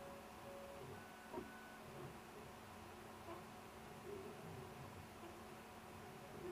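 Vector 3 3D printer's stepper motors whining faintly as the print head moves while printing, in steady tones that change pitch and stop as one move gives way to the next, with a faint tick about a second and a half in.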